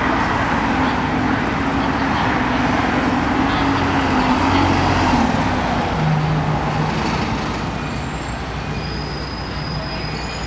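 Busy restaurant room noise: a steady wash of background chatter with a low hum under it that drops in pitch about six seconds in.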